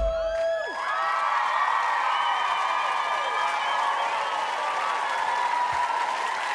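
The band's final held note cuts off in the first second as the song ends. Then a studio audience cheers and applauds, with many high voices whooping over the clapping.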